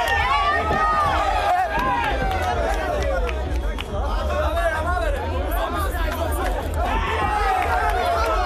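Crowd of spectators shouting and chattering, many voices overlapping, over a steady low rumble.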